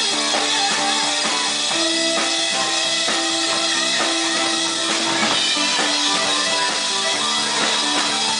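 Live rock band playing loudly: electric guitar over a steady drum-kit beat.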